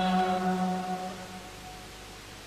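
A man's voice holding one long sung note at the mic, which fades away about a second and a half in and leaves only faint hiss.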